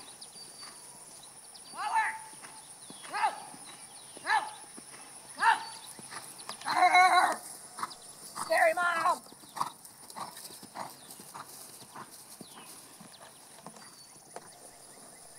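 Hoofbeats of a cantering bay mare on grass. Over them, high calls come about once a second, each falling in pitch, followed by two louder, longer, wavering calls in the middle.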